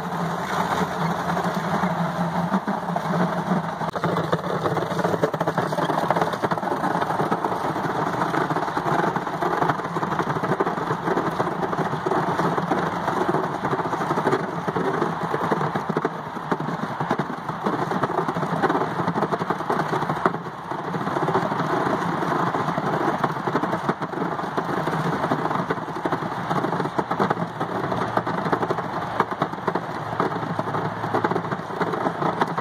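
Gallagher geared electric-fence reel being cranked continuously, a steady mechanical running noise as polybraid winds onto it, with the supply spool rolling around in a plastic bucket below.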